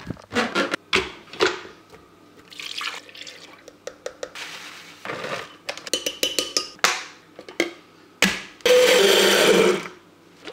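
Spoon clinks and knocks as ingredients go into a glass blender jar, then near the end a countertop blender runs loudly for about a second, blending a smoothie.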